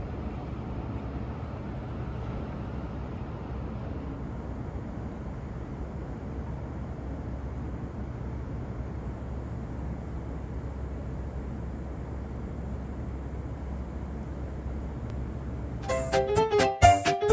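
Steady city street noise: a low, even rumble of traffic.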